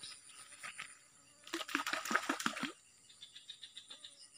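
Faint, steady high-pitched chirring of insects, with a rapid burst of clicks lasting about a second in the middle.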